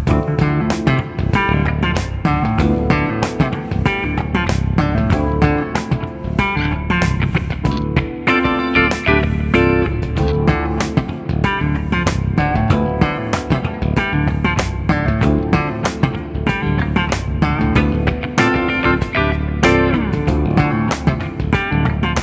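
Electric guitar in drop D tuning played with a funk slap technique: thumb slaps on the low D string alternating with index-finger hook pops, with slides, pull-offs and chord stabs high on the top four strings. It plays over a backing track.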